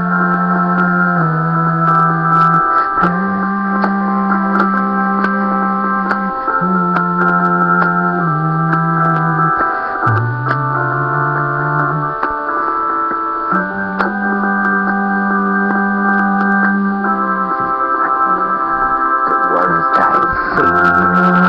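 Instrumental section of a song with no singing: sustained keyboard chords held over a bass line that moves to a new note every one to four seconds.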